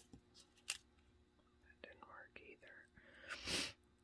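Quiet hand handling of paper squares on a scrapbook page, with a sharp click under a second in, faint muttering in the middle, and a short breathy rush near the end.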